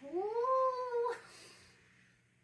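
A woman's drawn-out, high-pitched exclamation of 'whoa', rising in pitch and then held for about a second before it stops.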